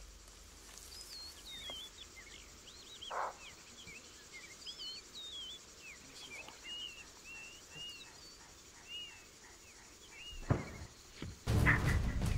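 Birds chirping: many short whistled calls that rise and fall in pitch, over a quiet background, with a soft rustle about three seconds in and another shortly before the end. Louder sound sets in during the last half-second.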